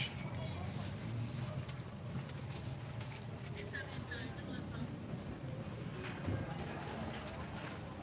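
Steady low background hum with faint voices in the distance, and a brief bird call about four seconds in.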